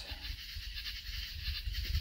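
Faint background nature-sound ambience: a steady low rumble with a soft hiss above it and no distinct calls.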